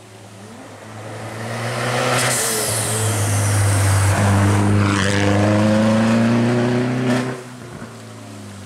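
Mini rally car engine under hard acceleration as the car comes up and passes close by. The note climbs steadily in pitch and is loudest in the middle, then drops away sharply near the end as the car goes past.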